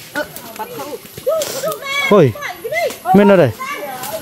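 Several people's voices: short calls and talk in the forest, with one loud, drawn-out call a little after three seconds.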